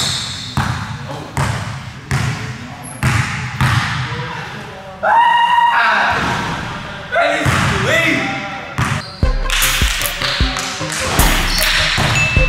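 Basketball bouncing on an indoor court floor, a string of sharp bounces as it is dribbled, with brief voices partway through and music coming in over the last few seconds.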